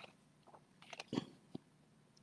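Page of a hardcover picture book being turned by hand: a faint paper rustle with a few soft clicks and crinkles, the clearest about a second in.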